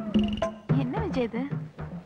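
Sharp, pitched drum strokes in a festival rhythm, with a man's voice rising and falling in a drawn-out call about a second in.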